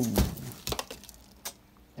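Small potted fern dropped onto a carpeted floor: one dull thud about a quarter second in, followed by a few faint clicks.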